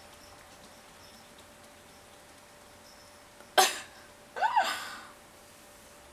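A person close to the microphone coughs once, about three and a half seconds in, then makes a short voiced sound that rises and falls in pitch.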